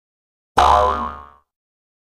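A short intro sound effect: a single pitched, ringing tone with a deep bass underneath, starting sharply about half a second in and fading away within a second.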